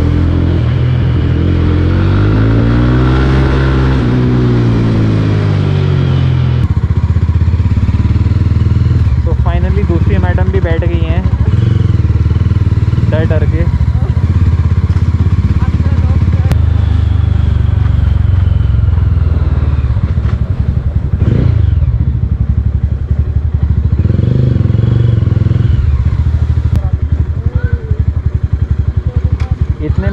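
Mahindra Mojo's 295 cc single-cylinder engine and exhaust heard from the riding seat. The engine note rises and then falls over a few seconds near the start, then holds at a steady low pitch.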